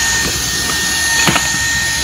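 Handheld cordless vacuum cleaner with a crevice nozzle running steadily with a high motor whine, with one light knock a little past halfway.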